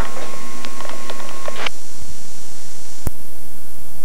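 Camcorder tape audio: a steady high whine with small scattered clicks and room noise that cut off abruptly about 1.7 s in. A single sharp click follows near 3 s, then a low buzzing hum as the recording ends into a blank tape.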